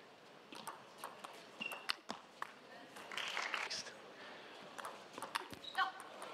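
Sharp clicks of a table tennis ball striking the table and bats, spaced irregularly through a quiet arena, with a few brief squeaks.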